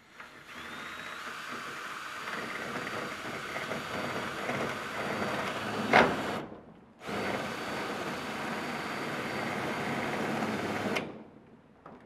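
A power drill driving a screw into corrugated metal roofing: the motor speeds up and runs steadily for about six seconds, with a sharp knock near the end of that run, stops briefly, then runs again for about four seconds and cuts off.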